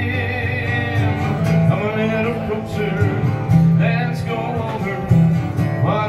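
Steel-string acoustic guitar strummed in a slow country ballad, with a man's singing voice through a microphone coming in at the start, again around four seconds, and near the end.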